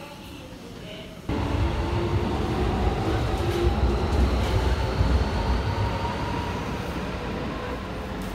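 Keikyu electric train running at the platform: a loud low rumble with a steady motor whine above it, cutting in suddenly about a second in.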